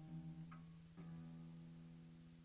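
Acoustic guitar played quietly. A chord plucked about a second in rings on and slowly fades over the tail of the notes before it.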